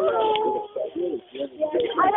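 Human voices making drawn-out, wordless sounds that rise and fall in pitch, with short gaps between them.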